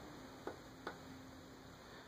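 Quiet room tone with two faint, short clicks, about half a second and just under a second in, over a faint steady low hum.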